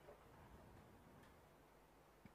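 Near silence: faint room tone with a couple of faint, short ticks.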